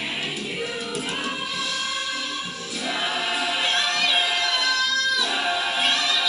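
A group of voices singing together, holding long notes with some wavering in pitch.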